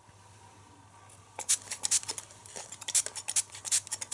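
Hand-pump spray bottle misting water onto tissue paper stretched over a frame, in a quick, irregular run of short, crisp spritzes starting about a second and a half in. The wetting pre-shrinks the tissue so that it dries taut and wrinkle-free.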